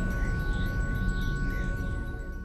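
Logo intro music sting: a held synth chord with two steady ringing tones over a low rumble and faint chime-like shimmer, starting to fade near the end.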